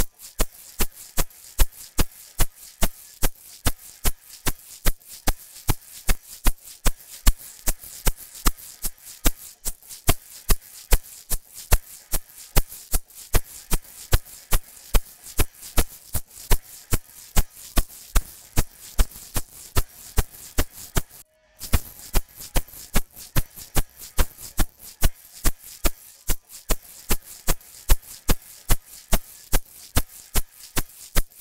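Recorded egg shaker played back through the Crane Song Peacock vinyl-emulation plugin with its harmonic and dynamic controls at maximum, shaken in a steady rhythm of about three crisp strokes a second. The plugin's colour setting is stepped from Silver toward Deep, each setting reaching further into the low frequencies. The sound cuts out for a moment a little past twenty seconds in.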